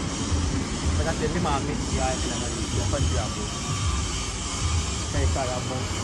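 Scattered voices over a steady outdoor rumble and hiss.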